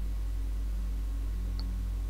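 Steady low electrical hum with its overtones, under faint hiss, with one faint click about one and a half seconds in.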